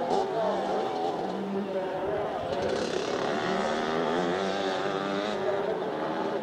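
Two-stroke 125cc motocross bike engines revving, their pitch rising and falling again and again as the riders accelerate and shift through the gears, with more than one bike heard at once.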